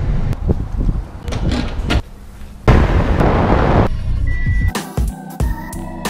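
Low rumbling road noise inside a moving car, with a louder rushing hiss for about a second in the middle. Background music takes over near the end.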